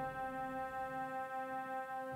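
The Albert Baumhoer pipe organ (2018) holds a soft, steady chord. It pulses gently and evenly about four times a second.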